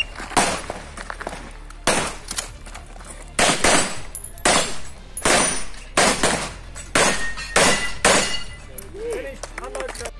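A 9 mm CZ Shadow 2 pistol firing a timed IPSC stage string: about a dozen sharp shots in quick pairs and short strings, with brief pauses as the shooter moves between targets. Each shot has a short echo, and the firing stops about eight seconds in.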